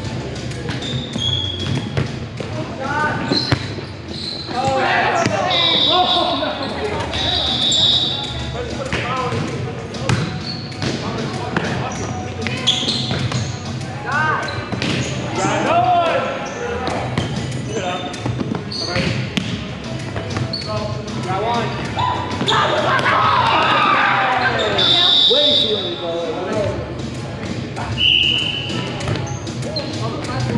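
Volleyball play in an echoing gymnasium: balls being struck and bouncing on the hardwood floor amid indistinct players' voices, with several short high-pitched squeaks.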